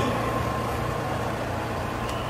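Steady low rumble of a vehicle engine idling in the street.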